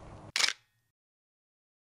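A single camera shutter click from an SLR, sharp and short, about a third of a second in, just as the outdoor background sound cuts out.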